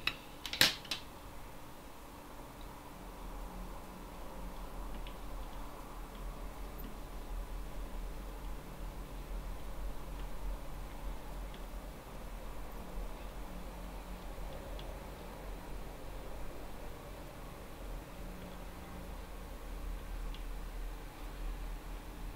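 Quiet, steady low hum of running equipment, with a few faint ticks and two sharp clicks about half a second in.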